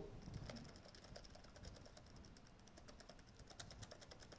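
Faint, quick typing on a computer keyboard, a run of keystrokes several a second.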